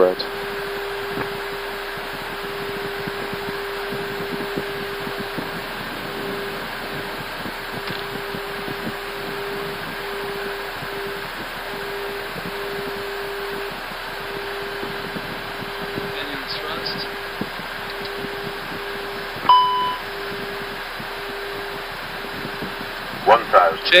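Airbus A320 flight deck noise in flight: a steady rush of airflow with a steady hum under it. One short beep comes about four seconds before the end.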